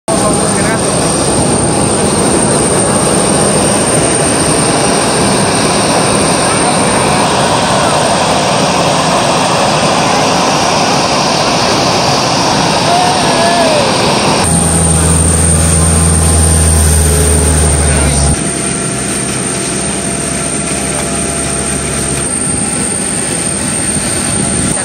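Aircraft engine noise on an airport apron with people's voices over it. About fourteen seconds in it cuts abruptly to a steady low hum.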